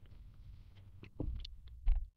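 Quiet room noise with two short knocks, one a little past the middle and one near the end.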